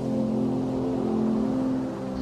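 Calm instrumental background music, sustained chords held steadily in a low-to-middle register.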